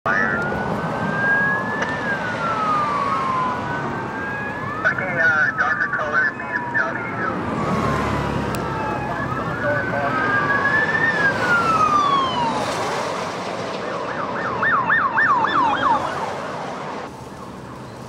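Police car sirens wailing in slow rising and falling sweeps, switching twice to a fast yelp, with more than one siren overlapping. A car speeds past with a rush of engine and tyre noise about eight seconds in.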